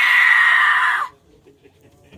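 A long, high-pitched scream, falling slightly in pitch, that cuts off suddenly about a second in.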